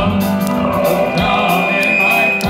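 Live country-gospel band music: drums, guitars and keyboard playing, with a long high note held from about halfway through.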